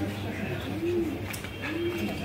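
A pigeon cooing: soft, low coos that rise and fall, repeating about once a second.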